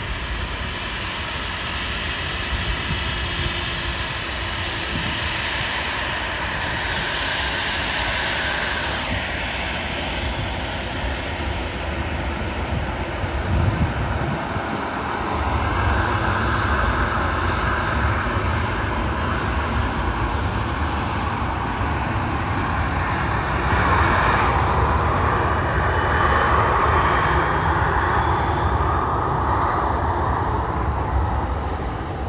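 Rolls-Royce Trent XWB jet engines of an Airbus A350-900 running as the airliner rolls along the runway. It is a steady, loud jet sound with a faint whine, and it grows louder about halfway through and again later on.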